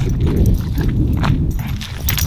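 Footsteps on a gravel driveway, with a steady low rumble from the phone being handled as it is carried.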